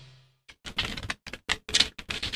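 Cartoon sound effect of a small dog's scampering paws: a quick, uneven run of about eight short scuffing taps, starting about half a second in.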